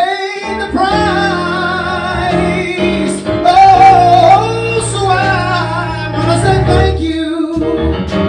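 A woman sings a gospel worship song with long, wavering held notes over keyboard accompaniment. The sound briefly drops out just after the start and again about a second before the end.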